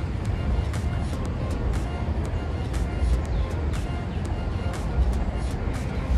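Low wind rumble on the phone's microphone, with soft background music and a few faint clicks.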